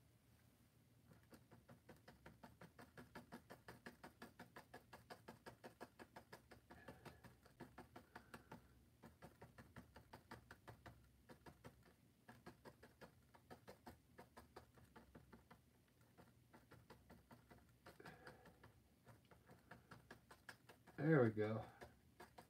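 Paintbrush dabbing on a stretched canvas: a run of faint soft taps, about four a second, that thins out about halfway through.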